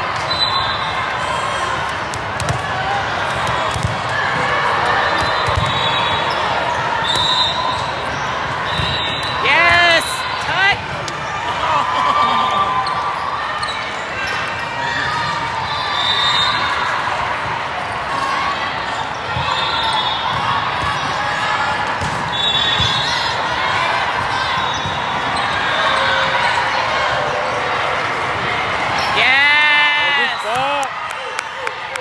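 Busy volleyball-tournament hall din: many voices echoing together, with scattered thuds of balls being hit. About ten seconds in and again near the end come two loud, short spells of shrill, wavering squeals.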